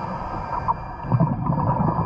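Muffled underwater sound picked up by a camera under water: a steady hum. From about a second in, irregular low bubbling comes in, typical of a scuba diver exhaling through a regulator.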